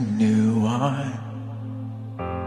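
A man singing a slow worship line with vibrato over a sustained chord on a Nord Stage 2 keyboard. His held note fades away a little over a second in, leaving the keyboard chord ringing on its own.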